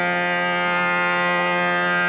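Harmonium holding one steady, unbroken note.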